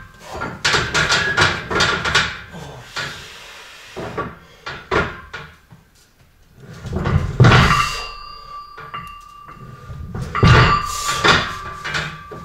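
Steel barbell knocking and clanking against a power rack under a heavy load. A quick run of rattling knocks comes first, then two heavier clanks in the second half, each leaving a ringing metal tone.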